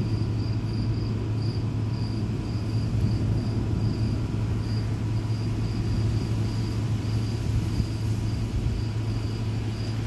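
Crickets chirping in short, slightly uneven pulses a few times a second, over a steady low rumble.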